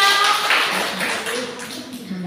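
A class of young children clapping their hands together, a burst of clapping that dies away about a second and a half in.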